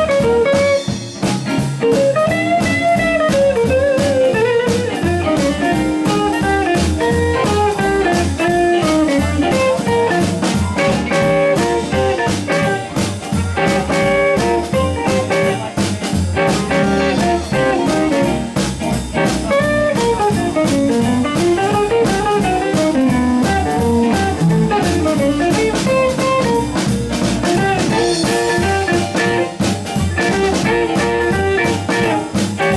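Blues band playing an instrumental passage: a guitar lead line with bending notes over drums.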